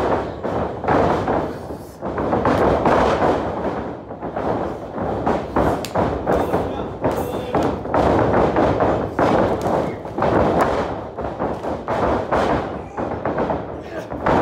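Repeated thuds of wrestlers' bodies and feet hitting the canvas of a wrestling ring, mixed with voices from the crowd.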